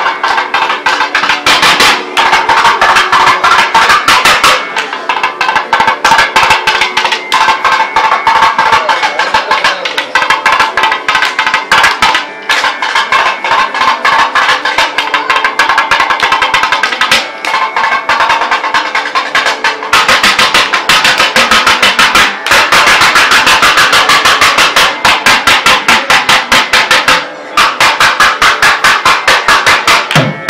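Thavil barrel drums played together in a fast, dense stream of stick and finger strokes, with a few brief breaks in the rhythm.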